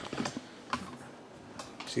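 A few scattered light clicks and knocks of a hand-held camera being picked up and moved about.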